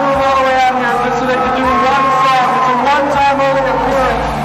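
A man speaking into a handheld microphone, his voice carried over a PA through a large, echoing hall.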